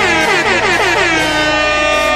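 Loud horn-like blare with several pitches sliding downward together, over a deep steady bass tone that comes in about half a second in.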